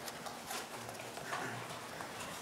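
Faint rustling and a few light, irregular taps of folded paper being handled on a table.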